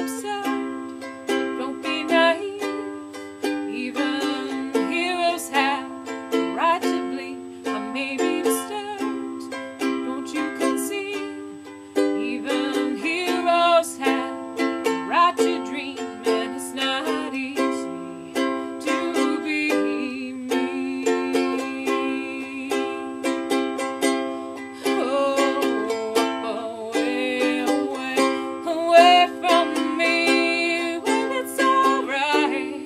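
Ukulele strummed in a steady rhythm, chords changing every second or two: an instrumental passage of a pop song.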